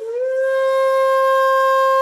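Shakuhachi-style bamboo flute playing one long held note that slides up slightly at its start, part of the instrumental accompaniment for a shigin (recited Chinese poem).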